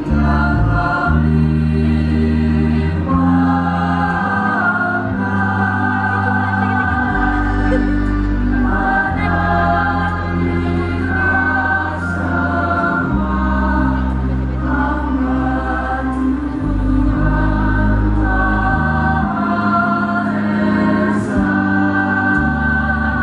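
Music: a choir singing slow, held chords over long sustained bass notes, with the chord changing every few seconds.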